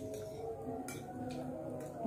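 A couple of faint clicks of a spoon against a plate during a meal, about a second in and again near the end, over faint steady background tones.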